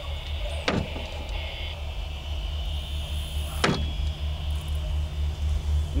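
Two steel four-point throwing stars striking and sticking into a target on a wooden board: one sharp impact about a second in, and a second one about three seconds later. A steady low hum runs underneath.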